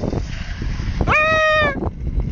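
A person's high, drawn-out shout about a second in, rising then holding, over a low steady engine rumble.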